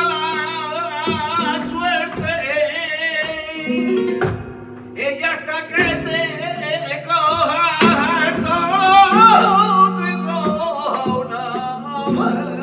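Flamenco soleá: a man sings long, ornamented lines with a strong wavering vibrato over a flamenco guitar's plucked accompaniment, pausing briefly about four seconds in.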